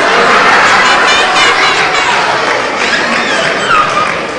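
A live audience of children and adults laughing and exclaiming all at once, a loud mass of overlapping voices that eases off near the end.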